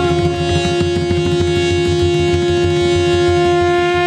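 Harmonium holding one long sustained note, with a barrel-shaped hand drum keeping a quick, steady rhythm beneath it: an instrumental passage of a devotional bhajan between sung lines.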